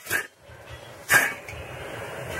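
A stainless steel lid is set onto a stainless steel sauté pan, with one sharp metal clank a little over a second in, covering the simmering sauce so it heats faster.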